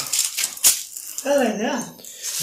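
A few sharp clicks and a rattle, then a short vocal sound from a person, its pitch rising and falling.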